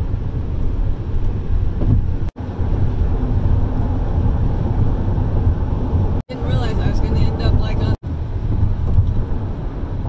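Steady low road and engine rumble heard inside a moving car's cabin at highway speed, cut off briefly three times. A voice is heard faintly for about two seconds after the second break.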